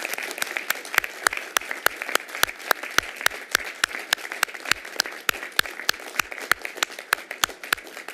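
A group applauding, with one person's loud claps close to the microphone, about three to four a second, standing out above the rest.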